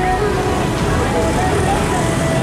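Outdoor street background: a steady low rumble like road traffic, with faint voices in the background.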